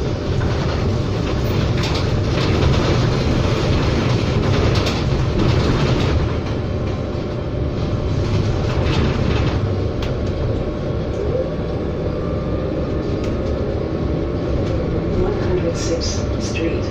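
Inside a Proterra BE40 battery-electric transit bus under way: steady low tyre and road rumble through the cabin, with scattered rattles and clicks from the body and fittings.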